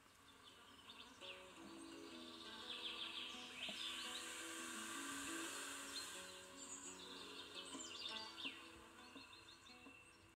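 Soft background music of slow held notes, with quick bird-like chirps over it and a hiss that builds through the middle and fades toward the end.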